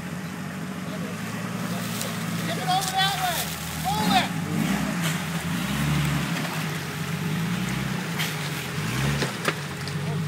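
Jeep Cherokee engine running as the Jeep wades through deep water, its revs swelling a few times. Two short whoops from a voice are heard about three and four seconds in.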